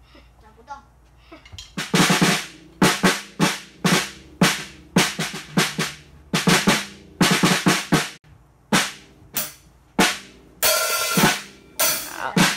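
A young drum student hits an acoustic drum kit with sticks in uneven single strokes, about two a second, starting a couple of seconds in. Each hit rings out. Near the end the strokes come quicker and bunch together.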